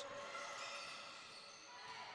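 Faint gymnasium game sound: low court and crowd noise, with a basketball being dribbled up the floor.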